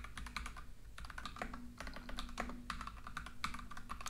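Typing on a computer keyboard: a quick, irregular run of key clicks as a short line of text is typed.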